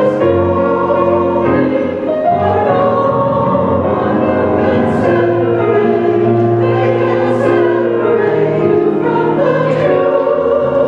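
Mixed church choir of men and women singing an anthem in long held chords, at a steady loudness, with the hiss of sung consonants standing out twice in the middle.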